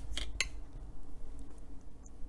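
Two quick, light clinks about a fifth of a second apart near the start, a watercolour brush tapped against a hard paint dish, over a faint steady hum.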